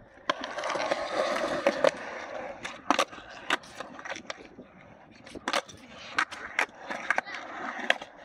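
Skateboard wheels rolling on concrete for the first couple of seconds, then a string of sharp wooden clacks from tail pops and the deck landing back on the ground as the rider tries shove-it variations such as bigspins.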